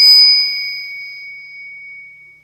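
Public-address microphone feedback: a steady high-pitched ring of two tones that fades away over about two seconds as the voice trails off just after the start.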